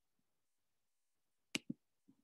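Near silence, then about one and a half seconds in a sharp click followed at once by a softer, duller knock.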